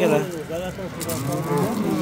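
A cow mooing: one low call lasting over a second, sinking in pitch toward its end, with men talking close by.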